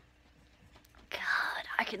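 A woman's voice: a short quiet pause, then about a second in a breathy, whispered sound as she draws breath to speak, and her spoken words begin near the end.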